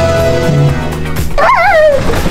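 Background music with steady held notes, then near the end a high, drawn-out call in a person's voice whose pitch wavers up and down.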